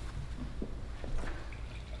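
Whiskey poured from a glass decanter into a glass: a faint trickle of liquid, with a couple of small clicks.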